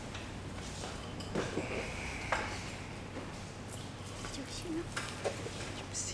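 Barber-shop room ambience: faint background voices with scattered small clicks and knocks, and a brief high squeak about two seconds in.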